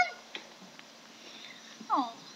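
Maine Coon cat meowing while being held. One call ends right at the start, and a short cry falls in pitch near the end.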